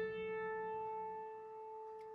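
A single piano note, the A above middle C, held and slowly dying away.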